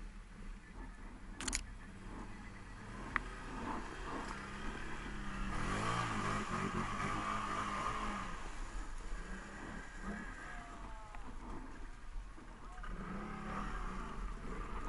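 Can-Am Renegade ATV's V-twin engine running and revving up through about the middle seconds as the quad pushes through a mud puddle, with the rush of splashing mud and water. There are two sharp knocks in the first few seconds.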